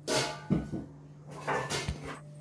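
A stainless-steel mixer-grinder jar with its lid being handled and set onto the grinder base: four short knocks and clunks, over a low steady hum. The grinder motor is not running.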